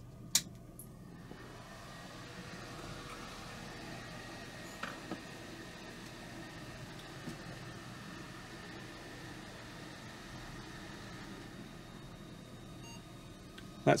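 A click as the PC is switched on, then the cooling fan on a newly installed AJA KONA 4 video card spins up and runs with a steady, very noisy whir along with the computer's fans, a sign that the card has powered up.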